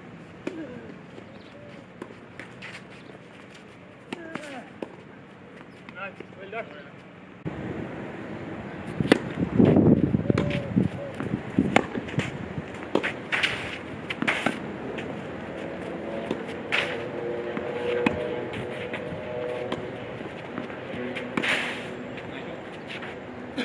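Tennis balls struck by racquets during a rally on a clay court, sharp pops every second or two, with voices in the background.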